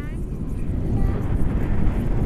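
Wind buffeting the action camera's microphone in paraglider flight: a steady low rumble that grows a little louder toward the end.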